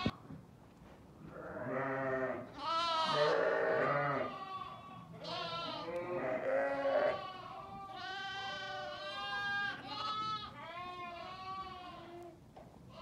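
A pen full of young lambs bleating, many calls overlapping one another, beginning about a second in.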